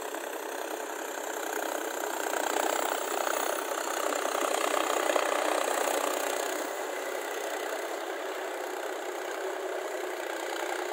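Mahindra Sarpanch tractor's diesel engine running steadily as it drags a puddler through a flooded paddy field on cage wheels, growing louder for a few seconds in the middle.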